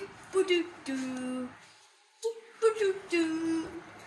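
A high voice singing drawn-out notes in a sing-song, in two phrases with a short pause between them.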